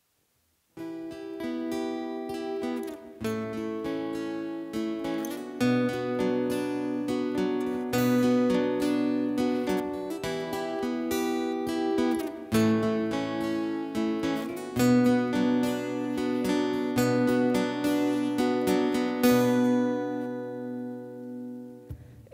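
Instrumental intro played on two strummed and picked acoustic guitars and an electric bass guitar. The music starts about a second in, and low bass notes join a couple of seconds later.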